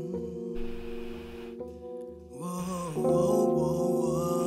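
Live R&B band music: held keyboard chords over a low note repeating at an even pulse, softening about two seconds in, then a female voice sings a wavering line as it swells again near the end.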